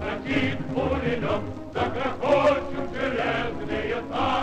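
Choir singing over music with a steady low bass.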